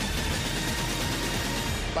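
Television transition sound effect, a dense rushing noise that fills the two seconds between speakers, over background music.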